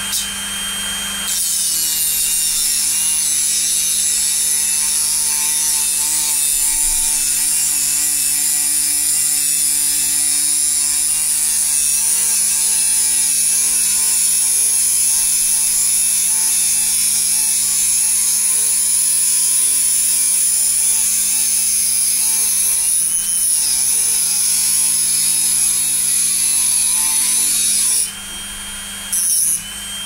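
Dremel rotary tool with an abrasive cut-off disc cutting through a screw on a stepper motor's end bell: a steady high motor whine with grinding hiss. It gets louder about a second in and cuts off near the end.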